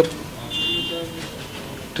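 A short horn-like toot lasting about half a second, starting about half a second in.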